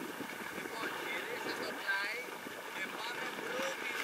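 Indistinct chatter and short calls from several people over a steady hiss of wind on the microphone.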